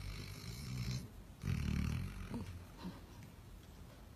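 Basset hound snoring in its sleep. A breathy draw in the first second is followed by a louder, low, rough snore about a second and a half in, which trails off.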